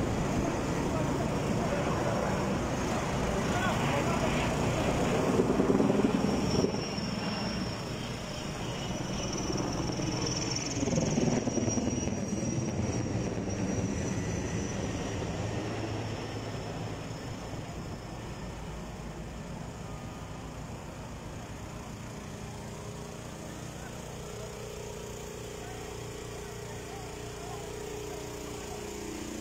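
Aircraft engine drone that grows louder over the first several seconds, then slowly fades as it passes, with voices heard now and then.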